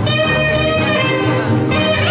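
Live gypsy swing jazz: a saxophone plays a sustained melody line over strummed acoustic guitar rhythm and a plucked double bass walking about two notes a second.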